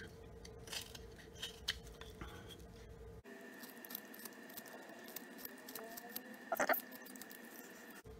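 Flexcut detail knife slicing shavings off a basswood block as it is roughed out by hand: faint, scattered scrapes and clicks of the blade cutting the wood. One brief higher-pitched sound comes about two-thirds of the way in.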